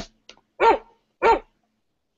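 Recorded dog barking sample played back by a button in a web music app: two short barks about two-thirds of a second apart.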